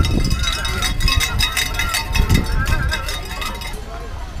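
A spectator's cowbell shaken in rapid, repeated clanks, cheering on passing marathon runners, with voices in the background. The clanking stops just before the end.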